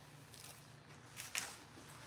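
Faint rustling of coarse burlap fabric being lifted and spread out on a table, with a brief, slightly louder rustle about a second and a half in.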